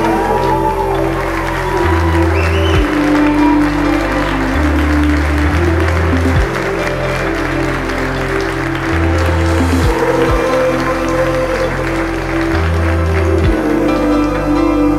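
Soundtrack music whose bass notes change every second or so, mixed over a crowd of guests applauding.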